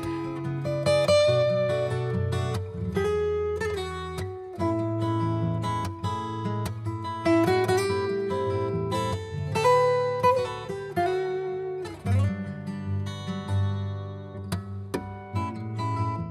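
Instrumental acoustic guitar music, a plucked melody over strummed chords, playing as the bed music for a radio segment break.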